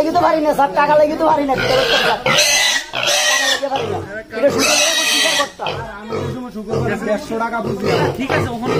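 Piglet squealing while being caught and held by the leg for an injection, in two loud, high squeals: one about two seconds in lasting over a second, another about five seconds in.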